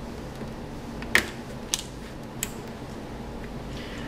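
A few sharp little clicks of a small flat screwdriver working plastic cable connectors on a laptop motherboard as the cables are pried out. The sharpest click comes about a second in.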